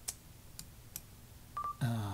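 A few faint clicks at a computer, spread through the first second, then a short, steady electronic beep about a second and a half in, just before a man says 'uh'.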